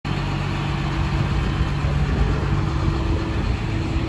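Hydraulic excavator's diesel engine running steadily, heard close to the machine: a constant low hum that does not rise or fall.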